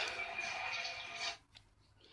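Cartoon soundtrack music playing from a television set, cutting off suddenly about one and a half seconds in and leaving near silence.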